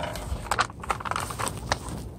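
Plastic flour bag being handled and opened: irregular crinkling and crackling.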